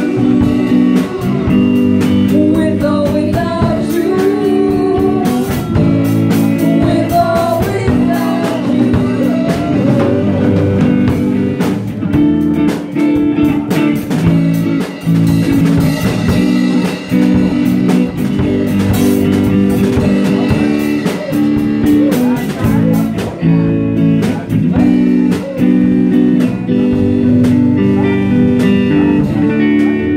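A live band playing: electric guitar and electric bass over a drum kit, with women singing through microphones, the singing clearest in the first third.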